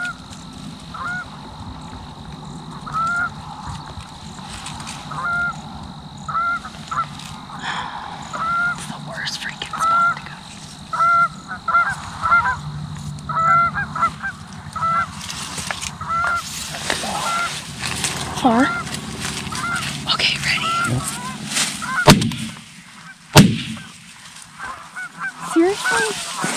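Goose honks repeating about once or twice a second, growing more frequent and overlapping as a flock comes in. Then two shotgun blasts about a second apart near the end.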